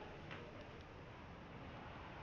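Faint footsteps and a few light clicks over a low background rumble, as from walking with a body-worn camera through a doorway.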